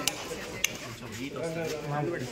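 Voices talking in a large hall, with two short sharp clinks, one at the start and one more a little over half a second in.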